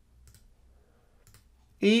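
Faint clicks from a computer mouse: two short pairs of clicks about a second apart while objects are being connected in the simulation software. Near the end a man starts speaking.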